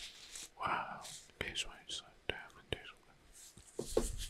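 A man whispering softly close to the microphone, with a few small sharp clicks between the phrases.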